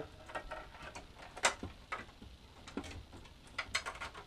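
Computer cables and their plastic connectors being handled and pushed through a PC case: scattered light clicks and rustling, with a sharper click about one and a half seconds in and a few quick clicks near the end.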